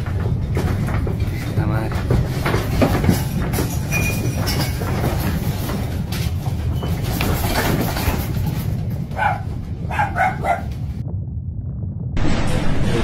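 Deep, continuous earthquake rumble with the house's walls and contents rattling and clattering. A person's voice breaks in briefly a few times near the end.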